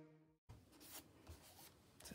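Near silence: the tail of background music cuts off about half a second in, followed by faint rubbing and handling of a hardback book's paper pages and cover under the hands.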